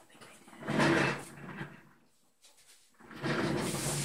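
Handling noise from paint cups and a stir stick: a short scrape about a second in, then a longer rustling scrape near the end.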